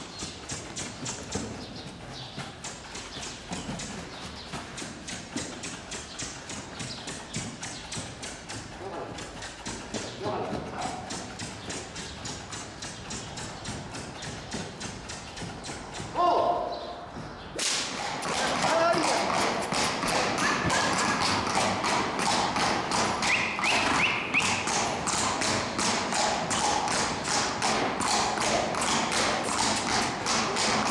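Hoofbeats of Spanish horses ridden in a collected, high-stepping dance gait. At first they are muffled strikes on soft arena dirt. From a little past halfway they are a louder, sharp and quick, even clip-clop of shod hooves on paving stones.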